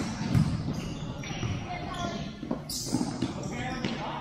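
Futsal ball being kicked and bouncing on a modular sport court in a large hall, as a few sharp knocks, the loudest about a third of a second in. Players' distant shouts sound under the knocks.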